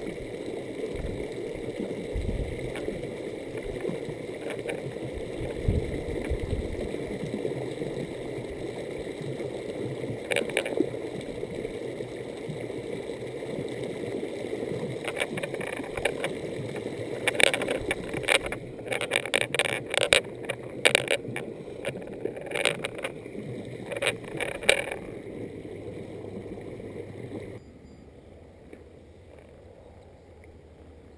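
Wind buffeting the microphone over a steady rushing background, with a run of sharp rustles and brushes from tall grass and vegetation in the second half. Near the end it cuts suddenly to a much quieter steady background.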